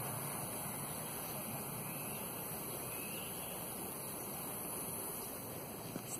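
Steady outdoor background noise, an even wash with no distinct events.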